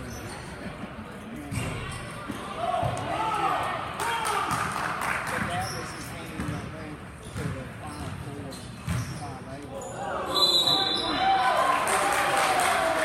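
Basketball game play on a hardwood gym court: the ball bouncing as it is dribbled, with shouting and chatter from players and spectators.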